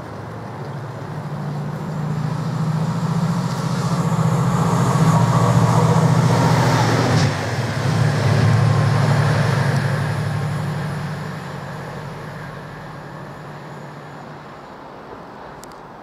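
Class 68 diesel-electric locomotive with a Caterpillar V16 engine passing through a station. Its engine note grows louder as it approaches, is loudest about five to nine seconds in as it goes by, and fades as it runs away.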